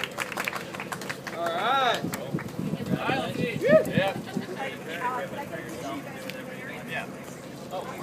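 Indistinct talk and laughter from a small group of people close by, with a few sharp claps in the first second or so.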